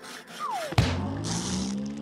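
Cartoon-style comedy sound effects: a falling whistle ending in a sharp knock, then a rising tone, with a short high rasp partway through.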